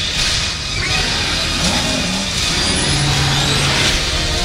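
Film trailer sound design: a loud, dense rush of engine-like noise mixed with music. A short rising glide comes about a second and a half in, and a low steady tone comes near the end as the trailer reaches its title card.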